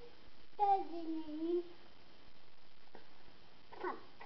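A young child singing one wordless note of about a second that slides down in pitch, with a brief burst of sound near the end.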